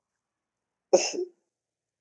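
One short cough from a person about a second in.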